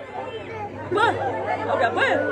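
Several people talking among a crowd, one voice rising into a call about a second in.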